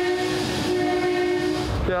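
Seattle Center Monorail train passing, with a steady high-pitched tone held for about two seconds over a rushing hiss; the tone stops shortly before the end.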